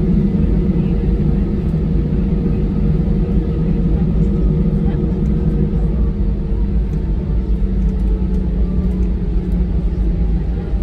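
Airbus A319 cabin noise while the jet taxis: steady engine hum with a constant low tone and a low rumble, heard from a window seat over the wing, with no spool-up.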